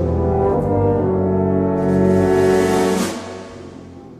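Concert band playing full, sustained brass chords, with a bright crash about three seconds in, after which the sound dies away.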